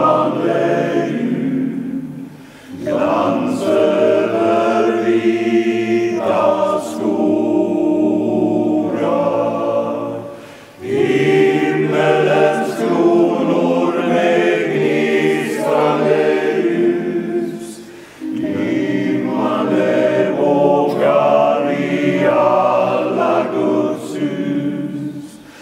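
Men's choir singing in long sustained phrases, broken by brief pauses about every eight seconds.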